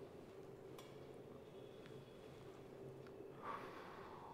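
Near silence: faint steady room hum, with a couple of faint clicks and a short soft rush near the end.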